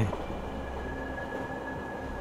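Steady rumble of a passenger train running, heard from inside the carriage, with a faint thin steady whine joining about a second in.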